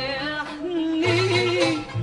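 A woman singing a long, wavering melismatic phrase in classical Arabic style, backed by an orchestra with strings. A low bass note enters about a second in.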